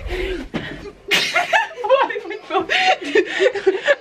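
Young women laughing and chattering indistinctly, starting about a second in.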